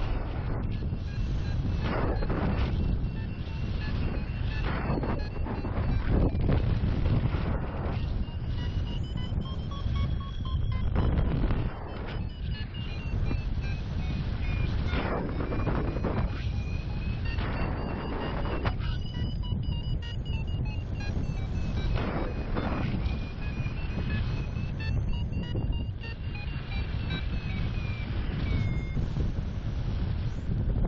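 Wind rushing over the microphone in gusty surges during paraglider flight, with a variometer beeping rapidly, its pitch drifting up and down, until it stops near the end. The vario beeping is the sign of the glider climbing in lift.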